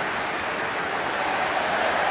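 Steady crowd noise from a full football stadium: the massed sound of thousands of supporters, without distinct shouts or chants standing out.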